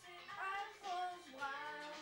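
Music playing with a high child's singing voice over it. The singing comes in clearly about half a second in and glides up and down.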